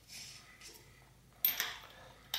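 Faint light clicks of a 7-speed freewheel being spun onto the rear hub's threads by hand, with a sharper metallic clink about one and a half seconds in.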